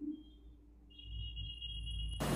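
Faint electronic background music: a few thin, sustained high tones over a low hum, with more tones joining about a second in.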